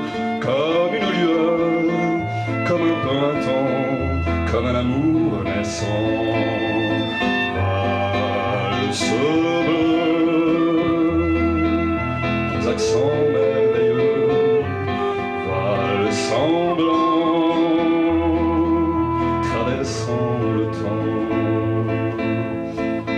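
Acoustic guitar and violin playing a slow waltz. Stepped bass notes sound under long held melody notes that waver.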